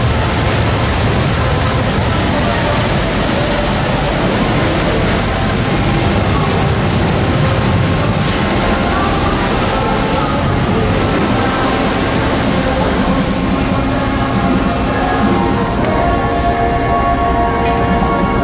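Steady, loud rushing noise of the ferry's engines and churning water, with faint voices of passengers joining in during the last few seconds.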